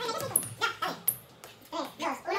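Short vocal sounds and brief exclamations from a group of teenagers, with a lull about halfway through.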